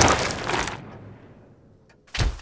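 A loud, sudden crash sound effect that fades away over about a second, with a second swell about half a second in.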